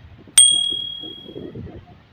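A single bright bell ding, the notification-bell sound effect of an animated subscribe button, struck about half a second in and ringing out over about a second.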